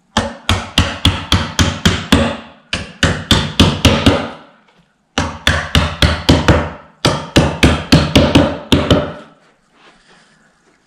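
Claw hammer tapping the end of a chipboard drawer panel to knock the flat-pack joint together: quick blows, about five a second, in four runs with short pauses between.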